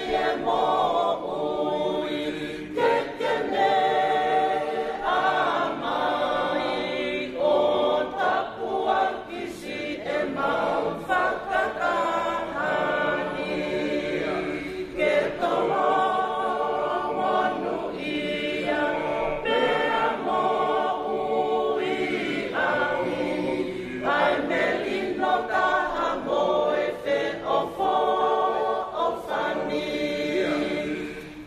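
A mixed group of men and women singing together unaccompanied, in sung phrases a few seconds long with short breaths between them.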